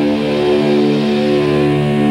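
Doom metal played back from a recording: heavily distorted electric guitars hold a long sustained chord that rings steadily, with no drum hits.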